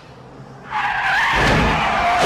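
Car tyres screeching in a hard emergency skid, beginning suddenly about two-thirds of a second in and continuing loud with a wavering high squeal.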